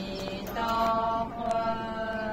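Buddhist chanting in long held notes: monastics reciting the Buddha's name (nianfo).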